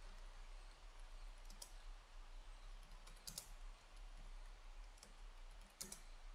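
Faint clicks of a computer keyboard in three brief clusters, about a second and a half apart, over a low steady hum; otherwise near silence.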